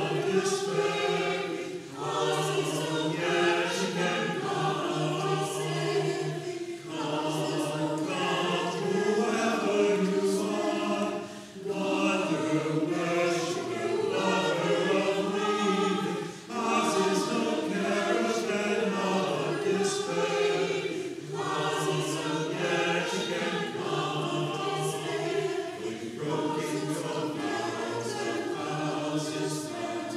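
Mixed choir of men's and women's voices singing, in phrases with short breaths between them.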